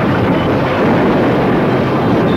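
Ship's deck cargo winch running under load: a loud, steady mechanical din.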